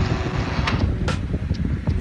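Low, rough rumble of noise on the microphone, with a faint steady hum for about the first second and a couple of short clicks.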